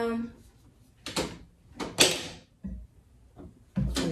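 Pump-action facial mist spray bottle sprayed, with a short hiss about two seconds in, the loudest sound, after a lighter spray or click a second earlier. A soft thump and a click of the bottle being handled follow near the end.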